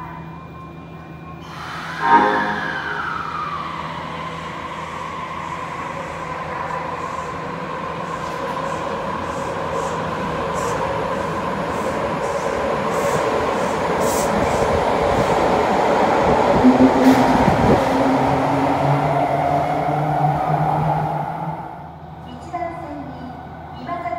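Osaka Metro 80 series linear-motor subway train departing an underground station. There is a sudden loud sound about two seconds in as it starts off, then a steady motor whine and running noise that build as the cars go past, dropping away just before the end.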